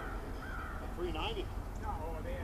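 A few short calls from birds, with people's voices, over a steady low rumble.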